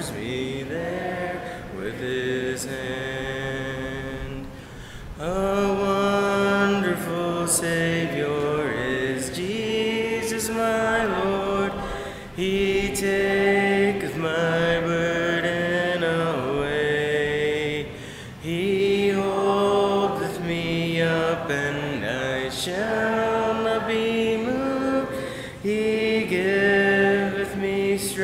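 Church congregation singing a hymn in parts, unaccompanied, in long held phrases of several seconds with brief breaks between them.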